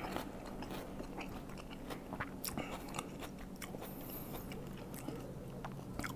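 A man chewing a mouthful of jackfruit dipped in sweet rujak sauce, heard close up: faint, irregular soft mouth clicks and smacks.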